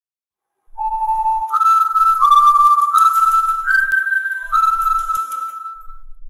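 A whistled tune: a single pure tone moving in steps through about six held notes, starting low and jumping higher, beginning shortly after a second of silence. A faint hiss sits behind the middle notes.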